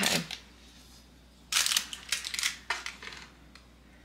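A sharp knife cutting down through a pan of set fudge, crinkling the parchment paper lining, in a short run of crackly scrapes about a second and a half in, ending with a click.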